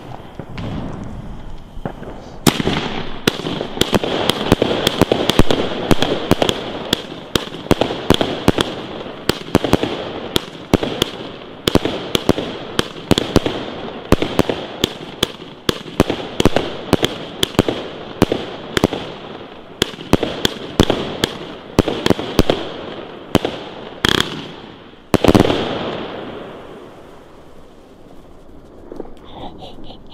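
Funke Kamuro Weissblinker firework battery firing: a couple of seconds in it breaks into a rapid, continuous stream of launch thumps and sharp bursting cracks over a high hiss that lasts about twenty seconds. It ends with one loud bang about 25 seconds in, followed by fading crackle.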